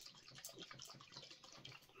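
Faint handling of a hot sauce bottle: a quick string of small clicks and ticks as the bottle and its cap are worked by hand.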